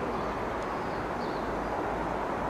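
Steady background rumble and hiss with no distinct events: the ambient noise of the room, heaviest at the low end.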